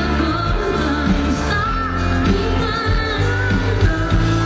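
Live rock band playing loud: electric guitar, bass and drums with a voice singing over them, heard from within the audience.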